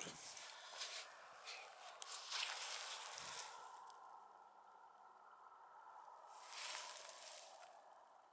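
Faint gusts of wind with rustling: a stretch of hissing rustle in the first few seconds, then a second shorter gust near the end.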